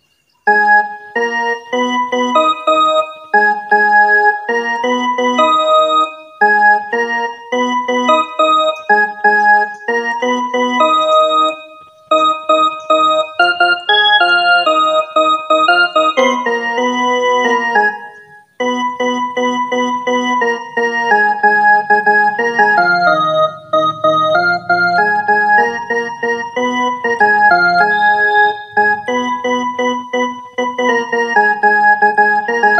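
Casio mini keyboard playing a single-note melody in a piano-like voice: the opening verse (mukhda) of a Bhojpuri sad song, played straight through. It comes in phrases with short breaks about 6, 12 and 18 seconds in.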